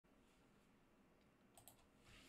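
Near silence, with a few faint clicks about one and a half seconds in.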